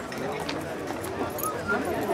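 Indistinct background talking, with a couple of light clicks.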